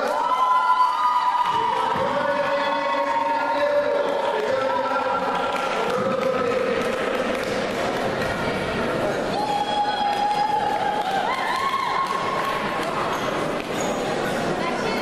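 A slow melody of long held sung notes stepping up and down, heard over the noise of a crowd in a large, echoing hall.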